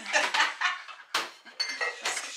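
Dishes and cutlery clattering and clinking as they are handled at a kitchen counter, with one sharp knock a little over a second in and a brief ringing clink near the end.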